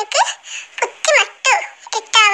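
A high-pitched cartoon child's voice laughing in a handful of short syllables.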